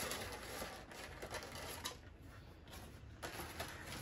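Faint rustling and small clicks of cardboard toy boxes and plastic wrapping being handled, dropping quieter for about a second in the middle.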